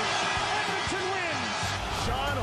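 Hockey arena crowd cheering and shouting just after a home-team goal: a dense steady roar of voices, with single shouts rising and falling above it.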